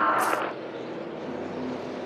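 NASCAR stock-car engine noise from the track, a steady drone. A brief high hiss sounds near the start.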